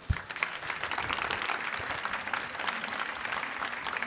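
Audience applauding, a steady patter of many hands clapping that begins right away and holds level.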